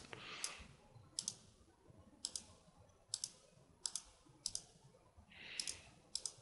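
Faint computer mouse clicks, about six of them roughly a second apart, each a quick double tick of button press and release. There are also two soft hissy sounds, one near the start and one near the end.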